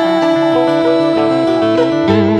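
Instrumental passage of Vietnamese vọng cổ music: a plucked guitar picks out a melody over a steady held note.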